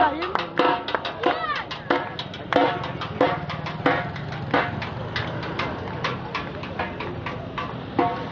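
Football supporters' drums beating a quick, steady rhythm under a crowd singing and shouting, with voices gliding up and down near the start.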